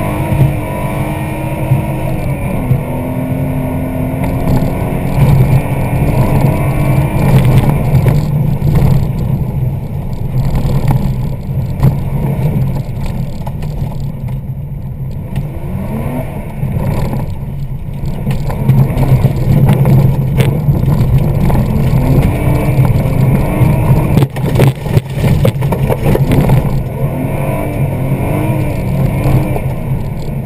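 Rally car engine heard from inside the cabin at full effort, its revs climbing and dropping again and again through gear changes, over a steady rumble of road noise. A cluster of sharp knocks and bangs comes about three-quarters of the way through.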